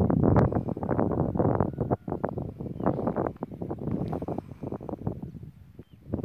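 Wind buffeting the microphone in irregular gusts, loudest in the first couple of seconds and easing toward the end.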